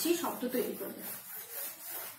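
Whiteboard eraser rubbing across a whiteboard in quick back-and-forth strokes, wiping off marker writing.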